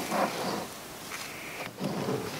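A tree saddle's rope waist belt being pulled taut by hand: a soft rustle and scrape of rope on nylon webbing, loudest in the first half second.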